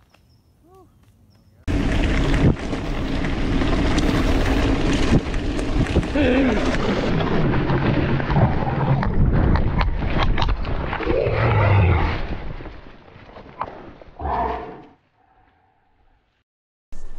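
Wind rushing over the mic of a camera mounted on a mountain bike, mixed with the bike rattling and knocking over a rough forest trail at speed. The noise starts suddenly about two seconds in, fades toward the end, and is followed by a short burst before cutting to silence.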